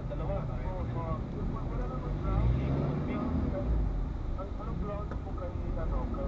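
Indistinct talking heard inside a car cabin, over the low, steady rumble of the car's engine and the surrounding traffic.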